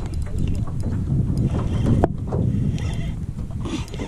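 A spinning reel being cranked under the pull of a hooked bass, its handle and gears clicking over a steady low rumble, with one sharp click about halfway.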